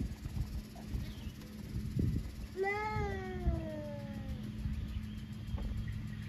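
One long animal call about halfway through, lasting nearly two seconds and sliding slowly down in pitch, over a low steady rumble.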